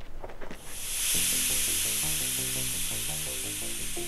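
Film score music entering about a second in, a run of short, stepped low notes, over a loud steady hiss that starts just before it.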